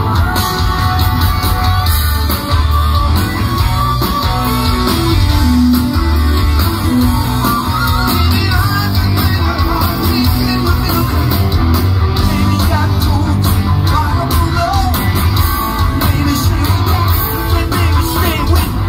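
Live rock band playing loud through a concert sound system: electric guitars, bass guitar, drums and keyboards in a steady driving rhythm.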